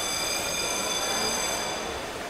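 Underwater hockey referee's buzzer sounding one steady, high-pitched tone with overtones that cuts off near the end, heard underwater over the steady hiss and rumble of the pool.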